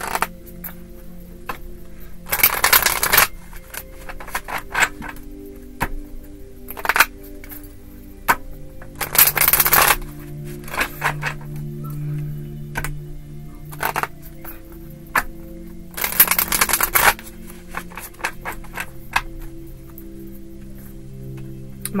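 A deck of tarot cards, bowl-shaped, being shuffled by hand: scattered crisp card clicks and three longer riffling bursts of about a second each, roughly seven seconds apart. Soft background music with held notes plays underneath.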